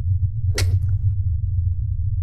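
Steady low hum, with one brief swish sound effect about half a second in.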